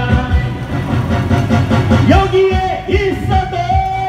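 A man singing into a microphone through PA loudspeakers over electronic keyboard accompaniment with a steady beat, holding long notes in the second half.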